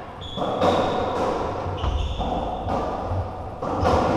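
Racketball rally in a squash court: several sharp knocks of the ball off rackets and walls, echoing in the court, with short high squeaks of shoes on the wooden floor.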